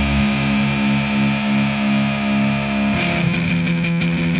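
Distorted electric guitars in a noise-rock track, holding a sustained chord that pulses evenly about three times a second. About three seconds in, the chord changes and the playing turns busier, with rapid strikes.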